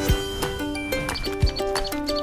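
Upbeat background music fading in: short pitched notes over a beat with a couple of deep kick-drum thumps and crisp percussion clicks.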